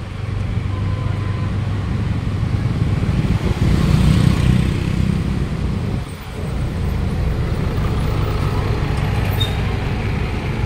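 Steady city street-traffic noise, a low rumble that swells about four seconds in and dips briefly after six seconds. A short high beep sounds near the end.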